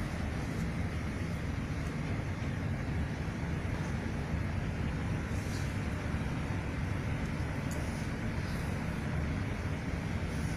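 Steady low rumbling background noise with a few faint light clicks.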